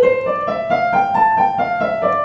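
Digital piano played with the right hand: single notes one after another, stepping up for about a second and then back down.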